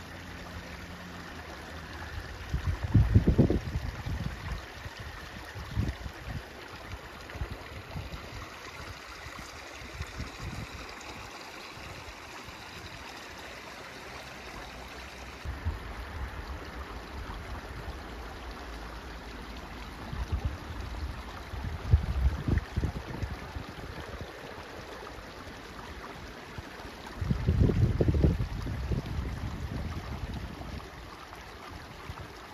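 Small rocky creek running and trickling steadily, fed by fresh rain runoff. A few louder low rumbles come and go, about three seconds in, around twenty-two seconds and near the end.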